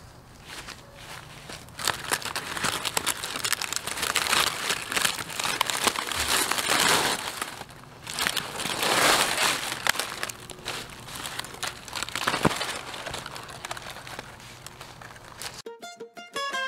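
Dry, withered cabbage leaves and stalks crackling, rustling and tearing as the old plants are pulled out by a gloved hand, in several surges with many sharp snaps. Plucked-string music cuts in at the very end.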